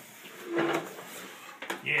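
Cardboard box flaps being pulled open: a short scraping rustle of cardboard about half a second in, then a brief knock just before the end.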